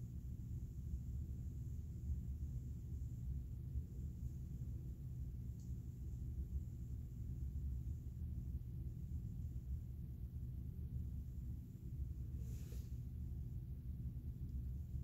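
Quiet room tone: a steady low hum, with one brief soft hiss near the end.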